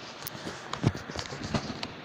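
A few irregular light taps and knocks, about six in two seconds: handling noise as the phone doing the filming is moved and repositioned.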